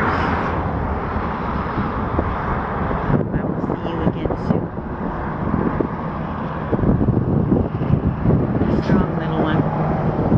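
Strong wind buffeting the microphone: a loud, constant rumble and rush that grows somewhat louder in the last few seconds.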